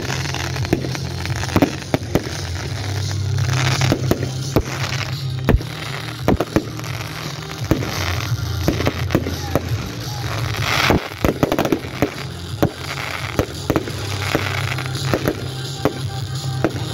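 A fireworks display: aerial shells bursting in a rapid, irregular string of bangs and crackles. Music with a steady low bass plays underneath.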